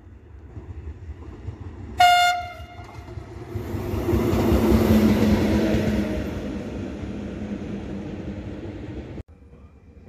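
E652 electric locomotive giving one short, sharp horn blast about two seconds in. Its freight train then rolls past, loudest around five seconds in and slowly fading, before the sound cuts off suddenly near the end.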